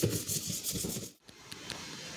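Quick back-and-forth rubbing strokes of a gloved hand wiping along the bottom of a cabinet, stopping suddenly about a second in. A quieter steady hiss follows.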